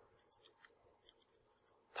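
Near silence: room tone in a pause in speech, with a few faint, short clicks.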